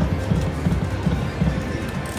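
Prowling Panther slot machine playing its spin music as the reels turn, a steady low drum beat of about three beats a second.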